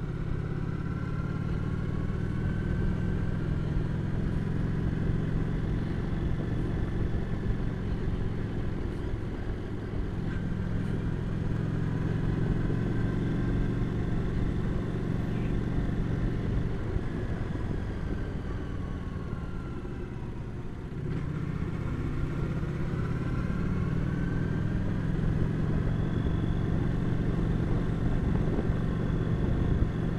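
Cruiser motorcycle's engine running as it rides along, with wind rush. Its note falls and drops in level about two-thirds of the way through as it slows, then climbs again as it picks up speed.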